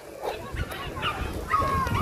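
Faint children's voices at a playground, with a short high-pitched cry near the end. A low rumble runs through the middle.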